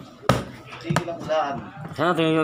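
A sharp knock about a quarter of a second in, a lighter knock near the one-second mark, then a high-pitched voice calling out briefly.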